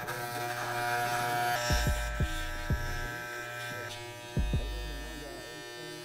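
Electric hair clippers buzzing steadily as they trim beard stubble on the chin, the buzz shifting slightly in pitch twice. A few low thumps fall between about two and four and a half seconds in.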